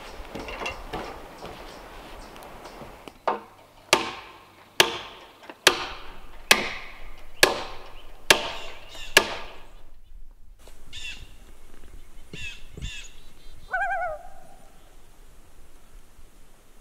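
Eight sharp, evenly spaced knocks a little under a second apart, each ringing briefly, followed by a few short bird calls, the last one longer and pitched.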